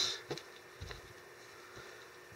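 Quiet room with faint soft handling noises, a couple of small clicks in the first second, as gloved hands smooth wet joint-compound mix over a mountain shell.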